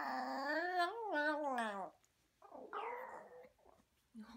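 Maltese puppy "talking": one long, wavering vocal call lasting about two seconds, its pitch rising a little and then falling away at the end. About half a second later comes a shorter, rougher vocal sound.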